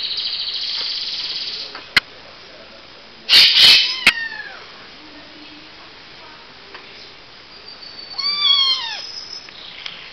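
A five-week-old Bengal kitten meowing as it is handled: a high, sustained cry at the start, loud noisy bursts a little over three seconds in followed by falling mews, and one more rising-and-falling meow near the end.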